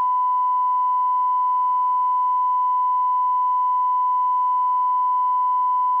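A steady 1 kHz test tone: a single loud, pure tone held unbroken at a constant level, of the kind used as a line-up tone at the end of a broadcast recording.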